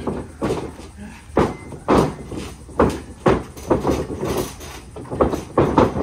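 A dozen or so irregular sharp thuds and knocks as wrestlers' bodies and feet strike the boards of a backyard wrestling ring under its mat.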